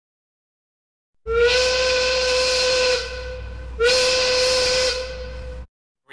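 A horn sounding two long, steady blasts, each sliding briefly up in pitch as it starts, with a breathy hiss over the tone; the second blast cuts off abruptly.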